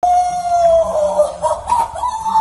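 Women's voices singing loudly, one voice holding a long high note that dips a little and then steps up near the end, with a lower voice underneath.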